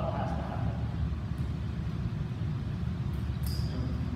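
Steady low rumble of room noise in a large hall, with no distinct event, and a short faint hiss near the end.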